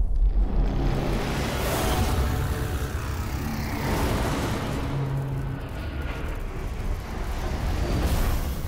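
Cinematic fire sound effects for an animated logo: a steady, deep rumble of flames with rushing whooshes sweeping through it.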